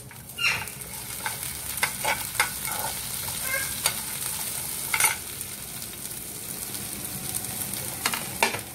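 Chopped vegetables sizzling in hot oil in a frying pan, with a steady hiss, while a steel slotted spoon stirs them and scrapes and clicks against the pan; the sharpest click comes about five seconds in.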